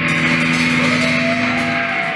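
A rock band's last chord held and ringing out on electric guitar and keys, with the drums stopped. A short gliding note sounds in the second half of the chord.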